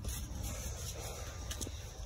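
Low rumble and rubbing of a handheld phone being moved about, with a couple of faint clicks about one and a half seconds in.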